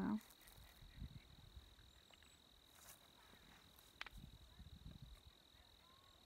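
Near silence with a faint, steady, high-pitched insect trill and a soft click about four seconds in.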